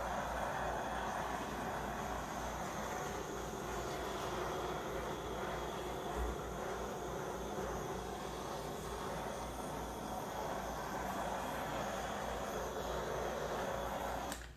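Handheld torch flame hissing steadily as it is passed over wet acrylic pour paint, bringing up cells and popping air bubbles in the surface.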